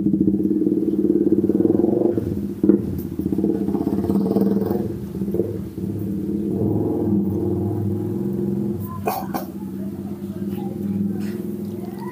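A steady low drone with an even hum, like an engine running at idle, lasting throughout, with a few sharp clicks about three and nine seconds in.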